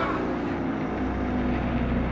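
Deep, steady low rumbling drone from the trailer's score and sound design, with held tones above it, swelling about a second in.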